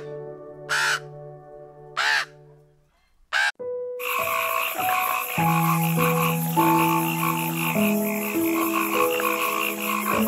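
A crow cawing twice in the first three seconds, then after a short gap a frog croaking in a steady run of rapid pulses from about four seconds in. Background music with held notes plays throughout.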